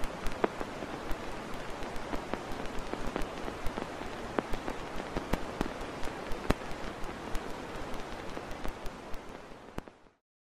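Rain falling steadily, with irregular drips hitting a surface a few times a second, fading out near the end.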